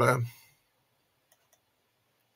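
Two faint computer mouse clicks a fraction of a second apart, about a second and a half in, against quiet room tone.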